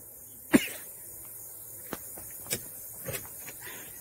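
A man's single short cough about half a second in, followed by a few faint clicks over a steady low outdoor background.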